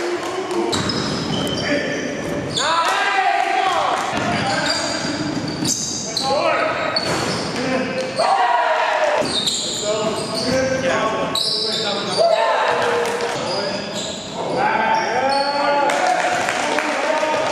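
Basketball game in a gym: a basketball bouncing on the hardwood floor, with players' voices echoing around the large hall.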